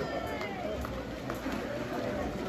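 Indistinct shouting and calling voices of water polo players and spectators around an outdoor pool, with a few short raised calls near the start over a steady low rumble.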